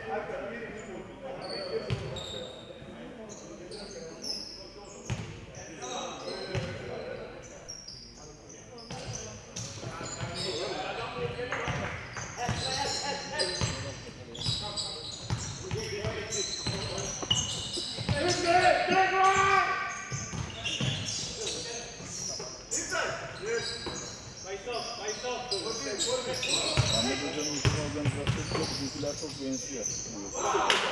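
Live basketball game sounds in a sports hall: the ball bouncing on the hardwood court amid many short knocks and squeaks, with players and bench calling out. A long, loud shout stands out about two-thirds of the way through.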